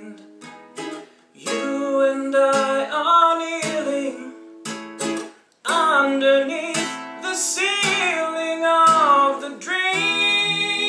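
A man singing while accompanying himself on an acoustic guitar. The singing breaks off briefly twice, about a second in and again just past the middle.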